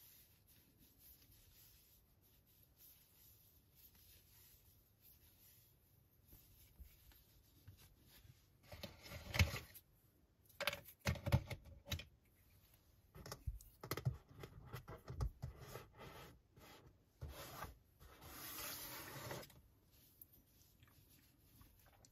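Rustling and scratching of wool yarn and a metal Tunisian crochet hook being worked by hand. The noises come in irregular short bursts from about eight seconds in, with one longer swish near the end.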